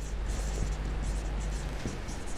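Marker pen writing on a whiteboard: the tip rubbing across the board in continuous strokes as letters are written.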